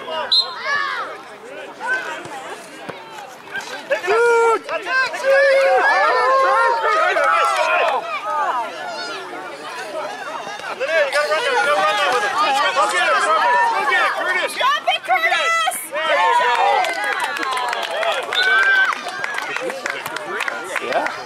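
Many young children's voices shouting and chattering over one another, high-pitched, with no single voice clear enough to make out words.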